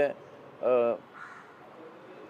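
A crow cawing once, a short arching caw a little over half a second in, just after a man's speech breaks off.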